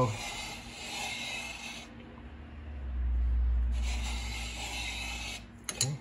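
Ridge reamer's carbide blade scraping the ring ridge at the top of a Fiat 124 cylinder bore as it is turned with a wrench: two stretches of rasping scrape, broken about two seconds in by a pause that carries a dull low rumble. A few sharp metal clicks near the end.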